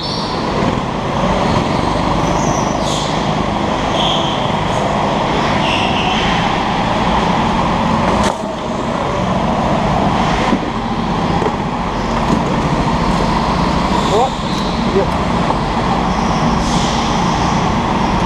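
Go-kart engines running steadily as karts pull out of the pit lane and drive round an indoor track, with a few short knocks on top.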